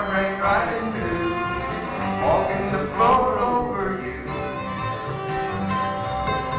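Bluegrass band playing an instrumental break: flatpicked lead guitar with rhythm guitar, fiddle and upright bass.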